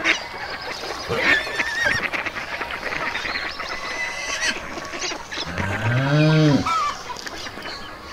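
A single loud, low moo that rises and then falls in pitch, about six seconds in, from a young water buffalo, with higher chirping bird calls earlier on.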